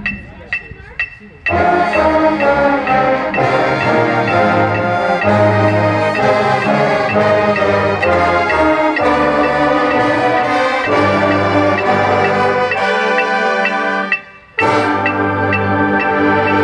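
Marching band brass section of mellophones, trombones, saxophones and sousaphones playing a loud, full passage together. It comes in about a second and a half in over steady metronome clicks, breaks off briefly near the end and comes back in.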